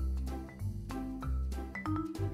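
Light background music: short mallet-percussion notes, like a vibraphone or marimba, over low bass notes.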